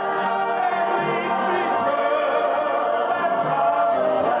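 Male gospel quartet singing into microphones with a congregation singing along, many voices together in a full, steady sound.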